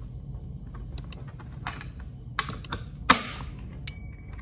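Light plastic clicks and knocks as the cover of a two-gang two-way wall switch is handled and fitted with a screwdriver, with one sharper click about three seconds in. A short bell-like ding rings out near the end.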